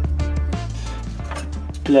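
Background music with a steady beat and a low bass line.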